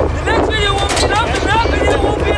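A man speaking outdoors while wind buffets the microphone, making a steady low rumble under the voice.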